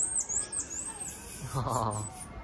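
A run of short, high-pitched chirping calls from a small animal, about four a second, fading out about a second in; a brief low voice sound follows near the end.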